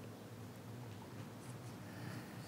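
Faint handling noises at a lectern, light rustling with a few small ticks about one and a half seconds in, over a low steady room hum.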